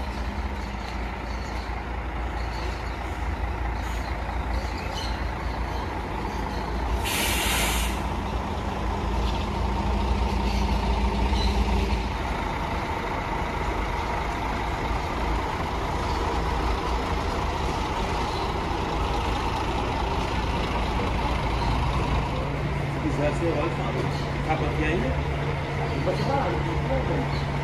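Diesel coach bus engines running at low speed in a bus yard. About seven seconds in there is a short, loud hiss of released compressed air from the air brakes.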